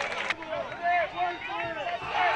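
Speech at a moderate level, the game footage's own broadcast commentary under the highlights, with a hiss of stadium noise that drops away about a third of a second in.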